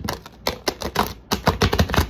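A deck of tarot cards being riffle-shuffled, the card edges flicking against each other in rapid clicks, in two runs, the second louder.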